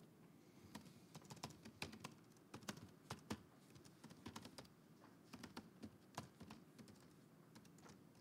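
Faint typing on a computer keyboard: quiet, irregular key clicks as a line of code is typed out.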